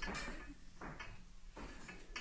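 Faint, scattered knocks and clatter: a few short, sharp sounds spread over the two seconds, with no speech.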